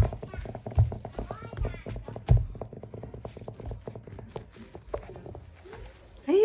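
A puppy's claws clicking quickly on a hardwood floor as it moves about, with a few dull thumps in the first couple of seconds.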